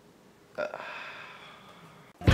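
A person's single short vocal "uh" about half a second in, fading away slowly over the next second.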